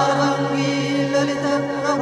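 Sanskrit mantra chanting: a voice holding a long chanted note over a steady low drone.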